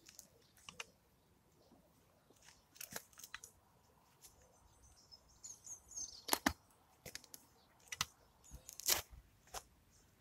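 Half-moon edging tool blade driven into grass turf, crunching and tearing through the roots and soil in a series of short cuts. The cuts come in a pair about 3 s in, then more often from about 6 s, with the loudest near the end.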